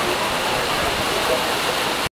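Steady rain on a metal roof overhead, an even hiss with faint voices beneath it.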